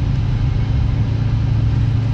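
Steady low hum of a moving car heard from inside the cabin: engine and road noise at an even level.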